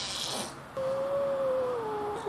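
A cat giving one long, drawn-out meow that starts about three quarters of a second in and sags slightly in pitch toward the end.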